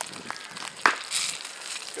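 A single sharp crack of wood about a second in, followed by a short high hiss.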